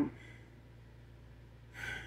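A pause in speech with only a faint steady low hum, then near the end a short, quick intake of breath before talking resumes.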